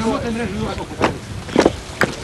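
Men's voices calling out over a steady low rumble, with a sharp short sound about a second in and a brief louder burst shortly after.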